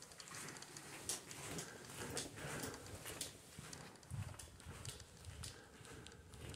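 Faint footsteps walking steadily across a carpeted floor, about two steps a second, with a few soft low thuds about four seconds in.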